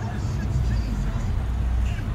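Honda car driving, heard from inside the cabin: a steady low rumble of engine and road noise, with faint short chirping sounds above it.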